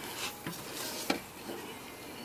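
Faint steady hiss of air and smoke flowing from a homemade evap smoke tester's hose, with a light click or two from handling about a second in.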